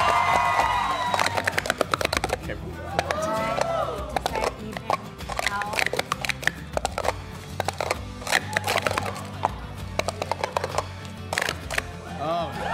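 Hard plastic sport-stacking cups clattering as they are stacked up and down in quick succession on a stacking mat: a rapid, uneven run of clicks and taps lasting about ten seconds, stopping shortly before the end. Background music and brief voices run underneath.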